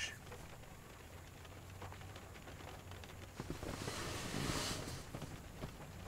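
Light rain pattering faintly on the car, with a short swell of hiss about four seconds in.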